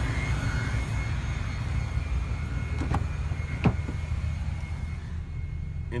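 A steady low rumble, with two sharp clicks about three and three and a half seconds in, the second the louder: a car door latch being worked as the 2012 Honda CR-V's rear door is opened.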